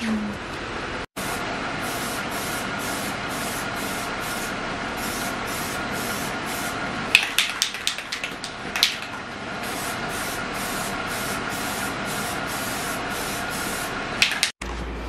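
Aerosol can of Plasti Dip spraying in a steady hiss, with a few sharp clicks about seven to nine seconds in.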